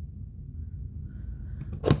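A handheld paper punch (Stampin' Up! Banners Pick a Punch) pressed down once on a strip of black cardstock, a single sharp click near the end as it cuts the flagged banner edge, after a faint rustle of the paper.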